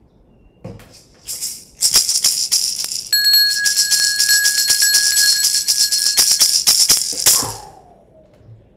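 A hand rattle shaken fast in a dense stream of small clicks for about six seconds, then fading out near the end, as sacred space is opened. Partway through, a clear, steady metallic ringing tone sounds along with it for about three and a half seconds.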